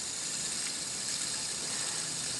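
Plastic LED fidget spinner whirring on its bearing as it is held and spun: a steady high hiss.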